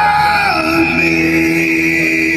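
Live band playing through a stage PA, with a loud yelled vocal note that drops in pitch about half a second in, over steady held instrumental notes.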